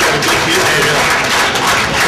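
Audience applauding, with some voices mixed in.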